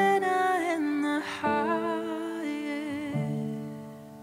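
Slow worship music: a wordless melody of long held notes over sustained chords. The sound softens and fades near the end.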